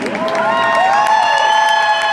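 Marching band brass and winds swelling up into a loud, held opening chord, several notes rising together about a third of a second in, over scattered crowd applause and cheers.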